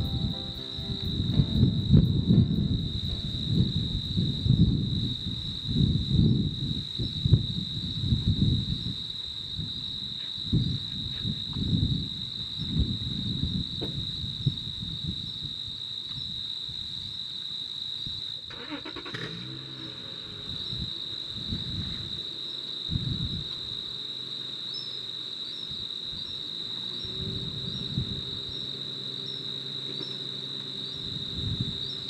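Steady high-pitched buzzing of an insect chorus in the marsh, with a low rumble that rises and falls through the first half.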